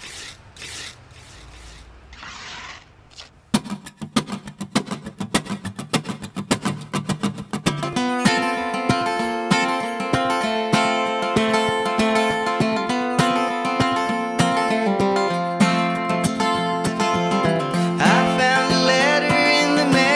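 A few soft swishes, then an acoustic guitar starts strumming a quick, steady rhythm about three and a half seconds in. The playing fills out and gets louder from about eight seconds on.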